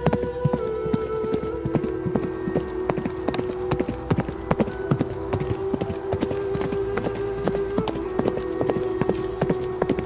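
Horse hoofbeats, quick sharp knocks several a second, over music of long held notes that shift pitch a few times.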